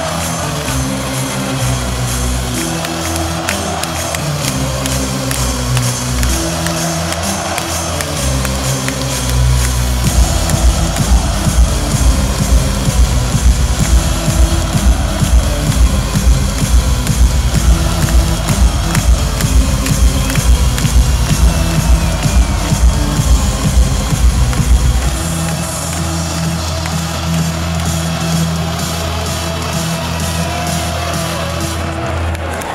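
Loud music over an ice-hockey arena's PA system during a stoppage in play. A fast, pulsing electronic beat kicks in about a third of the way through and drops out near the end, leaving a held bass line.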